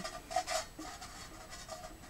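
Light handling of a small plastic choke lever assembly with a metal pick through it: a few soft clicks in the first half second, then faint rubbing.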